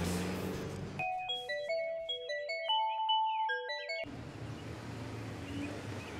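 Smartphone ringtone: a short electronic melody of quick, clear beeping notes lasting about three seconds, starting about a second in and stopping suddenly.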